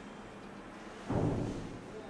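A single dull, low thump about a second in, fading within half a second, over faint room tone.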